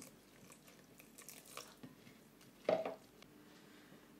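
Wooden spoon stirring a wet flour-and-oatmeal batter in a ceramic bowl as milk is poured in: faint scraping and sloshing with small clicks, and one brief louder sound a little under three seconds in.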